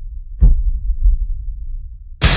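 Two deep, heavy thumps about half a second apart over a low, steady rumble: the slow pulsing intro of a metal track, before the band comes in.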